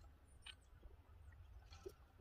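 Near silence: faint outdoor background with a steady low hum and a couple of tiny ticks.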